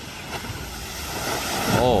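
Rush and splash of flood water as a Land Rover ploughs through it. A steady noisy wash that grows louder near the end.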